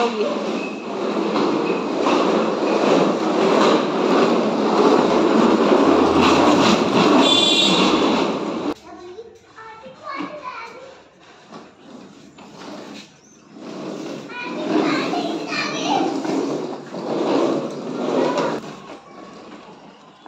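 Children playing on plastic ride-on swing cars: the wheels give a loud, steady rumble on the stone-tiled floor that cuts off suddenly about nine seconds in, followed by the children's voices.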